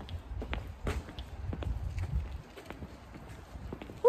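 Footsteps of a person walking, as scattered light clicks, over a low rumble of wind buffeting the phone's microphone.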